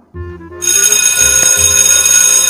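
An electric bell starts ringing about half a second in, a shrill continuous ring made of many steady high tones, and keeps going. Background music with a steady low beat plays under it.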